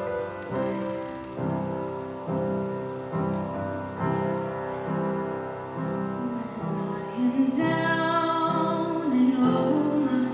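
Piano accompaniment playing repeated chords, about one a second, as an introduction; about seven and a half seconds in a woman soloist starts singing over it through a microphone.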